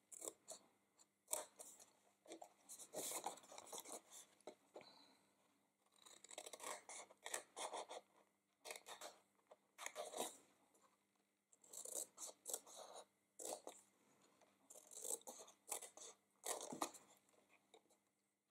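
Faint snipping of small paper scissors cutting into cardstock, in several short runs of cuts with pauses between.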